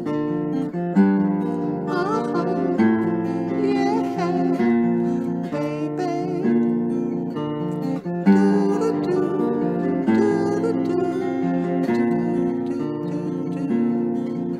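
Acoustic guitar music: strummed chords changing about every second, the instrumental lead-in before the vocals of a song.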